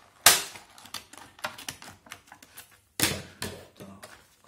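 Stiff clear plastic blister packaging being cut with scissors and pried open by hand: two loud sharp cracks about three seconds apart, the first the loudest, with smaller plastic clicks and crackles between them.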